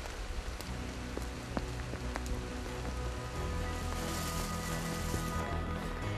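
Steady rain falling, with a few faint drop ticks. Soft background music of sustained notes comes in about a second in and fills out about halfway.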